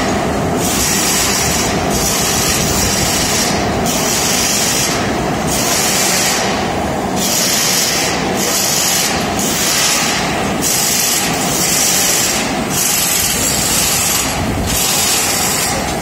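Loud, steady factory machinery noise, with a hiss high up that cuts in and out every second or so.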